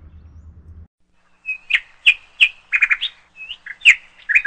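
A low steady hum stops abruptly just under a second in. About a second and a half in, a series of loud, sharp bird chirps begins, with quick rising and falling notes and short rapid trills.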